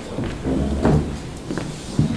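Knocks and thumps of handling at a wooden desk close to the microphone, loudest a little before the middle and again right at the end.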